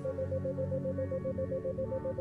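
Soft ambient synthesizer music built on 528 Hz, holding steady sustained notes. Over it runs a tone near 528 Hz pulsing on and off about seven times a second: an isochronic tone meant to lead the listener into theta-state relaxation.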